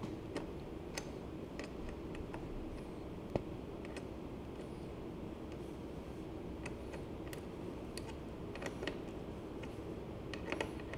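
Light, scattered metal clicks and ticks from a flat multi-tool wrench being fitted to and turned on the nut of a bicycle's coaster brake arm bolt. One sharper click comes about a third of the way in, and a few more cluster near the end.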